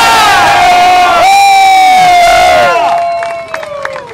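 Crowd cheering loudly, with long high-pitched whoops and screams held in two swells that die down about three seconds in. A few claps are heard near the end.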